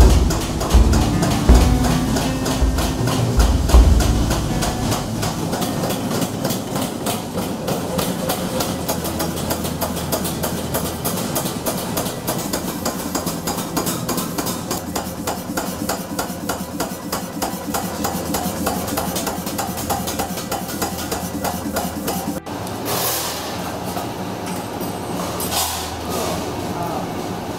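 Hammering on a brass gong blank: heavy, uneven blows for the first few seconds, then a long, fast, even run of metal strikes. Near the end the sound changes to a steadier workshop noise.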